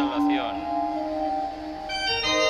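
A hymn during the preparation of the gifts at Mass: a singer's wavering note ends about half a second in, over an organ holding a chord. A fuller organ chord comes in near the end.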